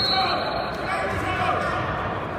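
Spectators and coaches shouting and talking over one another, echoing in a gymnasium, with scattered dull thuds from wrestlers on the mats.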